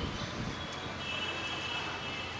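Steady outdoor background noise, with a thin high-pitched tone that comes in about a second in and holds steady.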